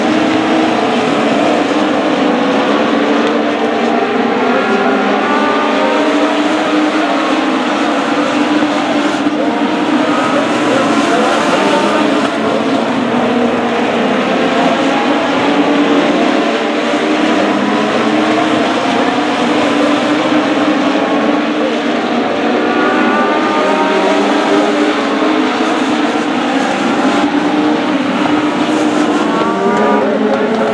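A pack of Legends race cars racing on a dirt oval, their four-cylinder Yamaha motorcycle engines at high revs. The engines drop and climb in pitch again and again as the cars lift into the turns and accelerate out of them.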